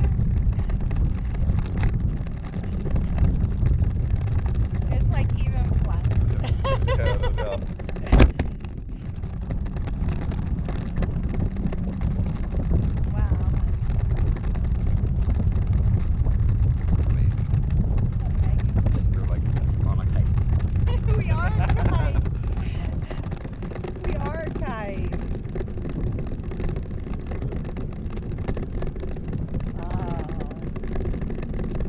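Wind buffeting the microphone of a camera on a parasail in flight: a steady low rumble that swells and eases. A single sharp knock about eight seconds in.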